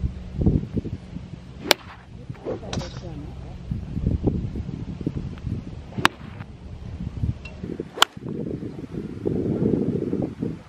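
Golf club striking golf balls off the grass at a driving range: a few sharp cracks spaced seconds apart, the loudest about six and eight seconds in, over a low wind rumble.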